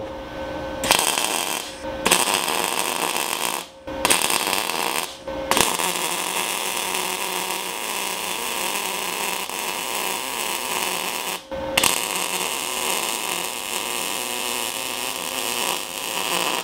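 MIG welding arc from a MIG 250G inverter welder feeding .030 wire into eighth-inch steel angle iron. It is struck and broken three times in short bursts in the first five seconds, then runs steadily for about six seconds, pauses briefly, and runs again for about five seconds, laying a smooth bead.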